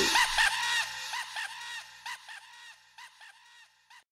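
Tail of a funk track's vocal: a short pitched voice sound repeats about five times a second, like an echo, growing steadily fainter until it dies out just before the end. A faint low bass note under it stops about halfway through.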